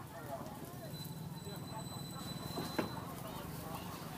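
People talking in the background over the steady low noise of a gas burner under a wide wok where an egg is frying. One sharp click comes about three-quarters of the way through.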